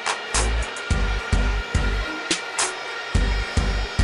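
Background music with a steady beat of deep bass hits and sharp percussion.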